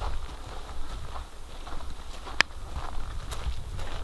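Footsteps on dirt and gravel, about two a second, over a steady low rumble, with one sharp click about two and a half seconds in.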